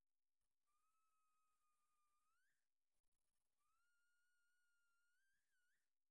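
Near silence, with two very faint held whistle-like tones, each bending up in pitch at its end.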